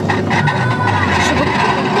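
Electric potter's wheel running with a steady motor hum and a higher whine as the wheel head spins under hands throwing clay; the low hum swells in the middle of the stretch.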